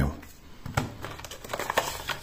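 Paper and cardboard packaging being handled, crinkling and rustling irregularly with a few small clicks.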